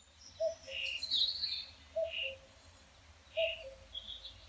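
Birds chirping, with a short two-note low call repeated three times about a second and a half apart, over a faint low rumble.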